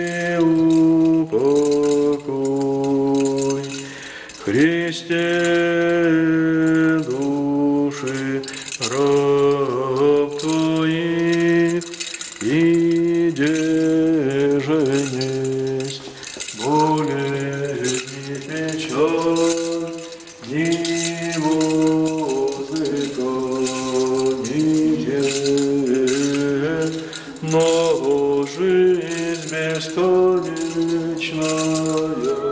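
A man's voice chanting an Orthodox liturgical chant: long held notes that step up and down in pitch, with short breaks between phrases. Through it, the small bells on a swinging censer jingle.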